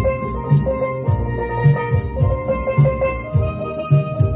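Steel pan playing a melody, with hand shakers keeping a steady rhythm of about four strokes a second over a low beat.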